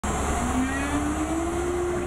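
CNC router running over a plywood sheet: a steady machine hum with one tone that climbs in pitch through the first second and a half and then holds steady.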